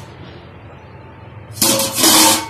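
Stainless steel lid lifted and scraped off a pot of boiling water about a second and a half in: a sudden loud metallic rasp with a slight ring, after a quiet, even background.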